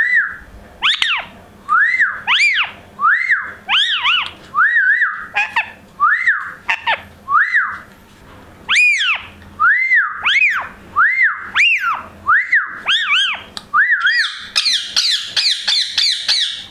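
Indian ringneck parakeet giving a long series of short whistled calls, each rising then falling in pitch, about one or two a second. Near the end they turn into a faster, higher chatter.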